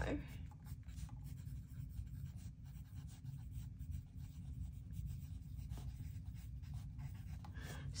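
A yellow wooden pencil writing on a workbook page: a run of faint, short scratching strokes as words are written out.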